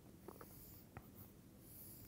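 Faint taps and light scratching of a stylus drawing lines on a writing tablet: a few small clicks in the first second, then a soft scratch near the end.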